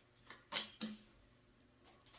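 Tarot cards being drawn from a deck and handled: three soft clicks and taps close together in the first second, then quiet room tone.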